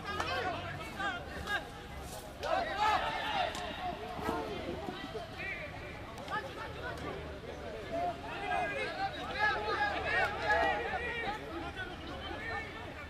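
Several voices shouting and calling out over one another, with no words clear: players and sideline voices during rugby play.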